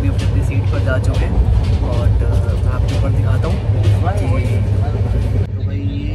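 Steady low rumble of a moving Indian Railways passenger coach, with indistinct voices over it. After a cut near the end, film dialogue plays from a laptop over the same rumble.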